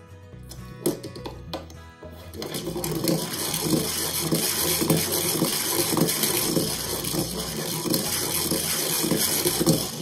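Plastic pull-string Captain Snowball Happy Meal toy's mechanism whirring and rattling as its cord winds back in. It starts about two and a half seconds in, runs for about seven seconds and stops just before the end, over background music.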